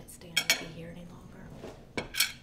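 Dishes and cutlery clinking on a table: two sharp clinks close together about half a second in, and another near the end.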